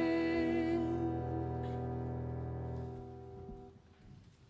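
A live worship band's final chord held and ringing, then fading away about three seconds in.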